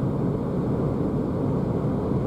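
Steady tyre and wind noise heard inside the cabin of a Renault ZOE electric car cruising at about 80 km/h.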